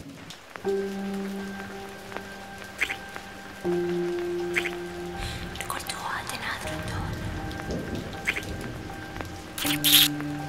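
Film score of slow, sustained low notes that shift to a new pitch every few seconds. A few short, wet lip-smacking clicks from a kiss come over it, the loudest near the end.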